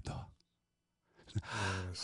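A man's breathy sigh out, beginning a little past halfway after a short silence, acting out the release of pent-up tension.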